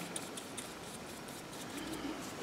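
A watercolour brush scratching faintly against paper in a few short strokes, which fade out over a low room hiss.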